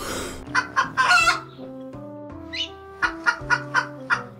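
A man coughing into his fist: a few short coughs about a second in, then a quick run of about five short coughs near the end. He blames the cough on mucus from taking hot oil dabs. Soft background guitar music plays underneath.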